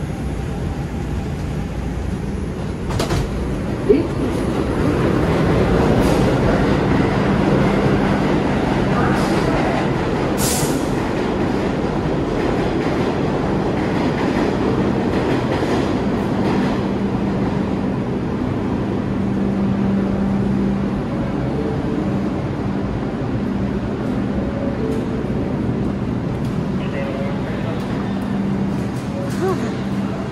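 New York City subway train noise: a steady rumble with a low hum that carries on through the platform and stairway. A single sharp knock about four seconds in.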